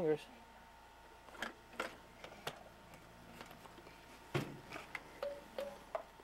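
Scattered plastic clicks and knocks from a child's pop-up toy being handled, with one louder click about four seconds in.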